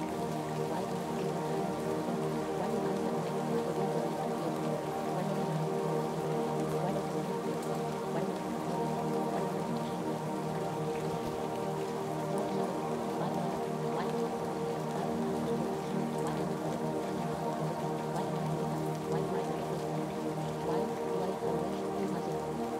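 Steady ambient music of long sustained tones, layered with the sound of rain and faint scattered drops.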